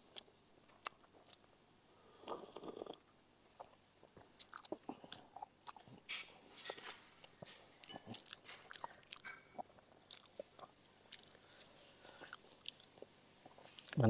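Faint sounds of a man chewing a mouthful of pempek fish cake, with scattered small clicks and smacks of the mouth.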